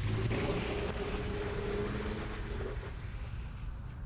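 A car pulling away and driving off, its engine and tyre noise slowly fading.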